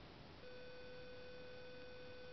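A faint steady electronic tone, a plain beep-like hum of one pitch, starts about half a second in and holds unchanged.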